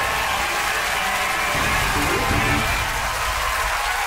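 Theme tune winding down under studio audience applause and cheering; the music fades out about two-thirds of the way through and the applause carries on.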